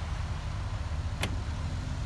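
Mercedes-Benz GL450's V8 engine idling with a low, steady rumble, and a single sharp click about a second in.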